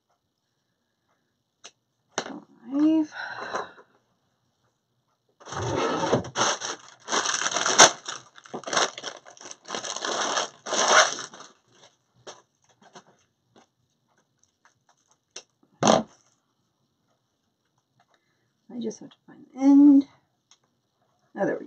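Crinkling rustle of metallic deco mesh tubing being handled and untangled, lasting several seconds. A single sharp click comes near the end, with a few brief murmured words before and after.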